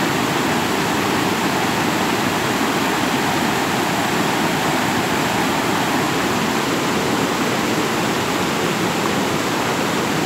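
Creek in flood rushing across a low road crossing and spilling over its edge in rapids: a loud, steady rush of fast-moving water.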